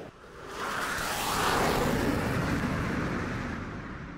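A rushing whoosh sound effect that swells up over about a second and a half and then slowly fades away.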